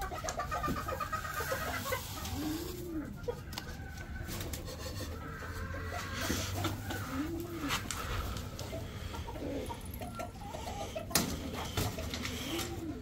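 Domestic pigeons cooing, several low, rounded coos, mixed with hens clucking in the aviary.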